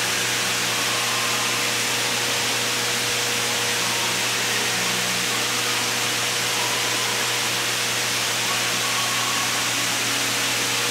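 Steady rushing noise of running water, even and unbroken, with a low steady hum underneath.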